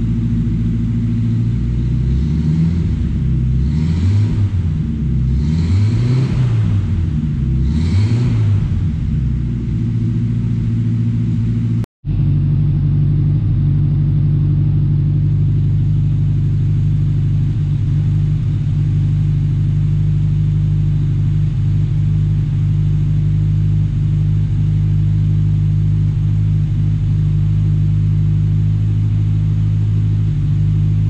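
1948 Chrysler Town & Country's straight-eight engine running, revved three times with a rise and fall in pitch each time. After a brief cut-out partway through, it settles into a steady idle.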